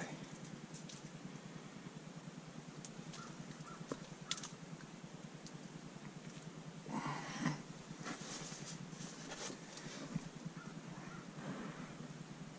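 Quiet handling noises: scattered soft clicks and rustling as a caught fish and gear are handled, with a brief louder scuffing sound about seven seconds in.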